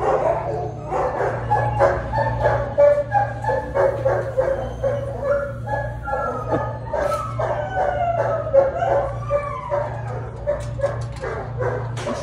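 Dogs in shelter kennels barking and yipping again and again, with drawn-out whining howls that slide up and down in pitch. A steady low hum runs underneath.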